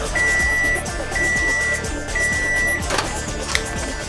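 Microwave oven's end-of-cycle signal: three steady, high beeps about a second apart, followed by a couple of short clicks, with music playing underneath.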